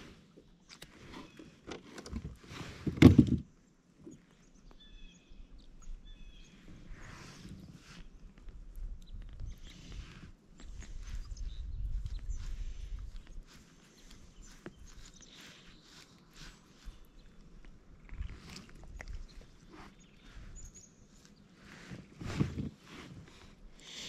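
Faint close handling noise of a fishing line being tied onto a frog lure with pliers in hand: soft rustles and small clicks, with a brief louder sound about three seconds in.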